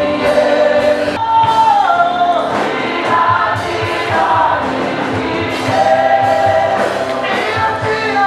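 Live gospel praise music: many voices singing together over a steady beat.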